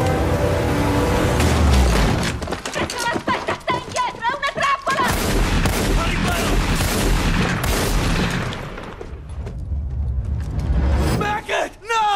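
Dramatic film score with bursts of rapid gunfire through the middle, and a man's anguished shout near the end.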